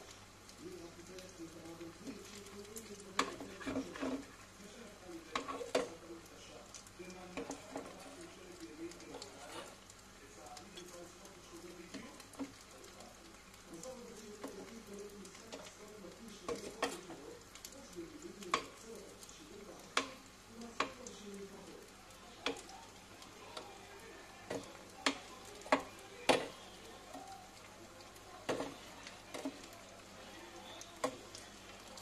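Fish balls frying in oil in a small stainless steel saucepan, with a light sizzle. A metal slotted skimmer clinks sharply against the pan as the balls are turned and lifted, the clinks coming more often in the second half.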